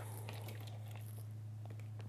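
Faint handling sounds of a clear acrylic quilting ruler and quilted fabric being moved on a cutting mat: a few soft small clicks and rustles over a steady low electrical hum.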